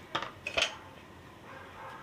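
Two short metallic clinks about half a second apart, near the start, from utensils knocking against a pressure cooker pot.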